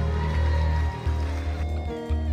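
Band music with a heavy bass line holding long low notes, broken briefly about a second in and again near the end, over sustained keyboard-like chords.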